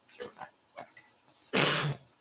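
A person coughing once, loudly and briefly, near the end, after a stretch of faint, indistinct talk.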